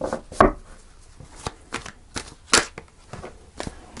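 Tarot cards handled by hand as the deck is shuffled and a card is drawn: a string of separate crisp clicks and snaps of card on card, irregularly spaced, the loudest about two and a half seconds in.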